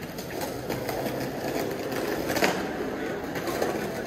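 Busy pedestrian street ambience: a continuous irregular patter of footsteps on paving with distant voices, and a sharper click about two and a half seconds in.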